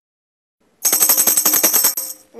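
Silence for most of a second, then a fast roll of tambourine jingles, about ten strikes a second, played as the opening of a song.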